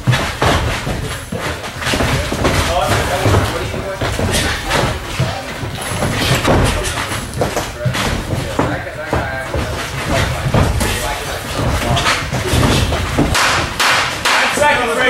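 Boxing sparring in a ring: many short thuds and smacks of gloved punches landing, mixed with footwork on the ring canvas, over voices in the gym.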